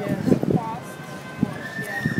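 Background voices of people chatting nearby, with a few light knocks, and a thin, steady high tone starting about halfway through that rises slightly near the end.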